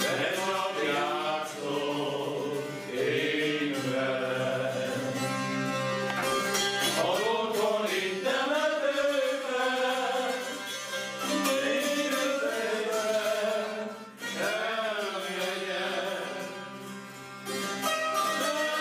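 A group of men singing a slow Hungarian folk song, accompanied by a citera (Hungarian zither) droning and plucking underneath, with a brief break between phrases near the end.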